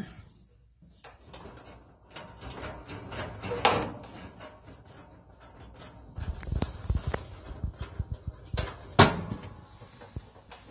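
Scattered clicks and knocks of multimeter test probes and wire terminals being handled against the dryer's metal heater housing, with the loudest knock near the end.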